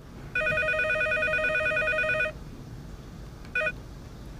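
Cordless landline telephone ringing with an electronic trilling ring: one ring lasting about two seconds, then a brief start of the next ring that is cut short about three and a half seconds in as the call is picked up.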